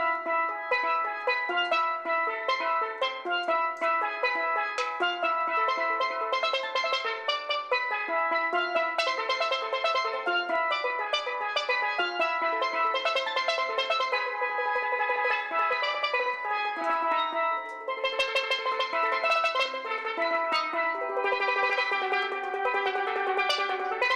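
A solo steelpan played with sticks: a quick melody of struck, ringing metal notes, with a short break near the end before the playing picks up again.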